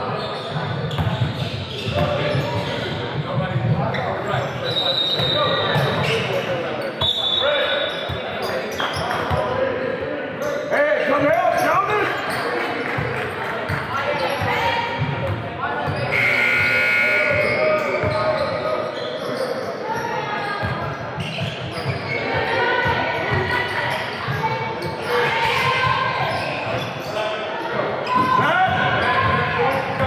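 Basketballs bouncing on a hardwood gym floor during a game, with indistinct voices of players and spectators echoing in a large hall. A few brief high squeaks cut through now and then.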